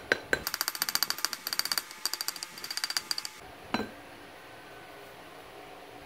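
A copper pipe rapping a metal pattern plate on a sand mold: a few single taps, then a fast run of light, ringing metallic taps for about three seconds, and one duller knock near the four-second mark. In sand casting this rapping loosens the pattern so it can be drawn from the Petrobond sand without tearing the impression.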